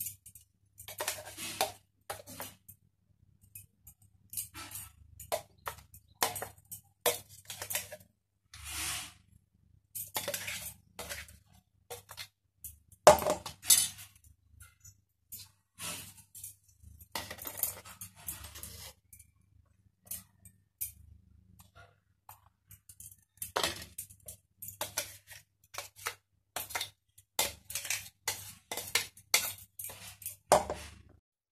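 A steel spoon scraping and clinking against the inside of a stainless-steel mixer-grinder jar as thick ginger-garlic paste is scooped out. The clinks and scrapes come irregularly, with short pauses between them.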